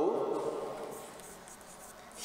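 Chalk scratching quietly on a blackboard as a word is written.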